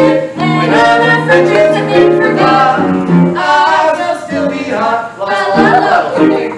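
A man and a woman singing a Broadway show-tune duet in phrases, with piano accompaniment.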